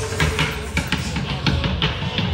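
Upturned plastic buckets drummed as street percussion, struck in a fast, busy rhythm of many hits a second with deep thuds under sharper cracks.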